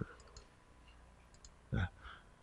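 A few soft computer mouse clicks, spaced apart.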